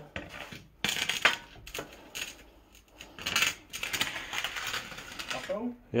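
Aluminium rail being worked loose from a pile of junk: irregular metallic clicks, knocks and scraping as things are shifted.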